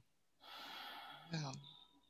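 A soft breath into the microphone, then a quiet spoken "yeah".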